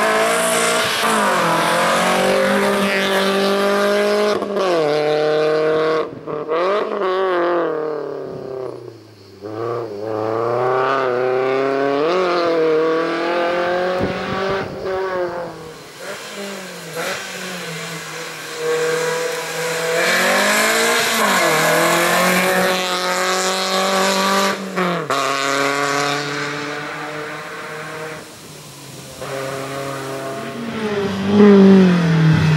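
Volkswagen Lupo slalom race car's engine revving hard, its pitch climbing and falling again and again through gear changes and brief lifts off the throttle, fading near the end.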